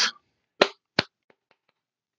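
Two sharp hand claps about half a second apart, then three fainter, quicker taps that fade out: a sarcastic golf clap.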